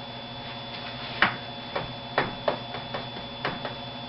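Steady electrical mains hum with a run of about seven light, irregular taps or clicks, starting about a second in.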